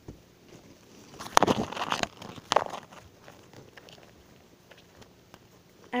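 Slime with small beads in it being squeezed and played with by hand close to the microphone: a cluster of crackling, squelching bursts about a second in and a sharper one a little later, then only faint rustling.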